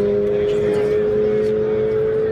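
Tuned Mitsubishi Lancer Evolution IV drag car's turbocharged four-cylinder engine held at high revs under full throttle, one steady note climbing slowly in pitch as the car runs down the strip.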